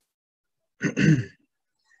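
A man briefly clearing his throat once, about a second in, with near silence around it.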